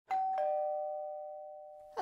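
Two-note doorbell chime, ding-dong: a higher note, then a lower one a moment later, both ringing on and fading away.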